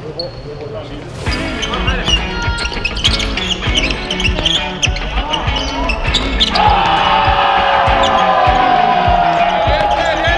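Basketball being dribbled and bounced on a gym court, mixed under edited background music; a loud sustained tone comes in about two-thirds of the way through and holds to the end.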